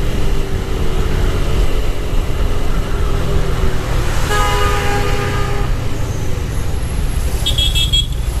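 Motorcycle engine and wind rumbling steadily while riding through traffic. A vehicle horn sounds midway for about a second and a half, and a brief higher-pitched beeping comes near the end.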